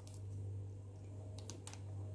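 Kitchen knife cutting a slice from a cream-frosted layer cake, faint, with a few quick clicks about one and a half seconds in. A steady low electrical hum lies underneath.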